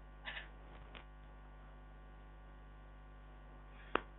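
Steady low electrical mains hum with no speech, and a single sharp click just before the end.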